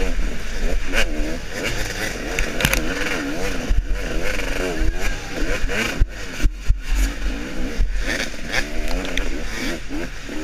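Two-stroke off-road motorcycle engine revving up and down over and over as the throttle is worked through the trail, heard close from the rider's helmet camera. Sharp knocks come through now and then as the bike hits bumps and roots.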